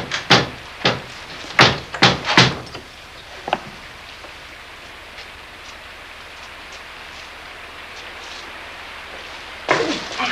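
A quick, irregular run of heavy thumps or knocks over the first two and a half seconds, then a steady low hiss with one fainter knock. Another burst of loud knocks comes near the end.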